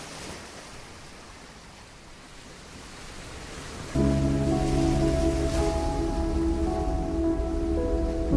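A soft, rushing nature-ambience noise, slowly growing louder. About halfway through, slow music with long held chords starts suddenly and takes over.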